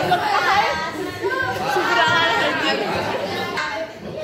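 Chatter of many students talking over one another in a classroom, their overlapping voices echoing in the room.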